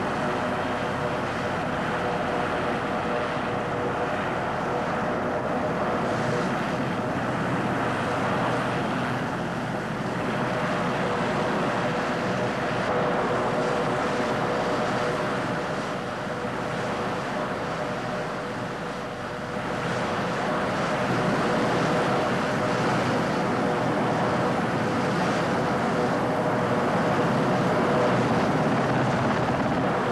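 Helicopter engines and rotors running steadily, a dense rushing noise with a steady hum through it that eases off briefly a little past halfway.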